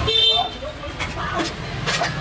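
Slurping of noodles and broth from a spoon: a few short hissy slurps, the strongest near the end, over a steady low street-traffic rumble. A brief high-pitched horn-like beep sounds at the very start.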